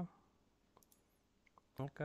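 A few faint computer mouse clicks in a quiet room, then a man's voice starts near the end.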